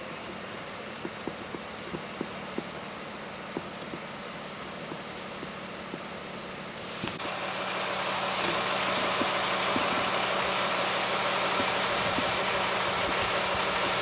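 A vehicle engine idling steadily, a constant hum with a few faint clicks over it. About seven seconds in, the sound grows louder, with a rushing noise added that carries on.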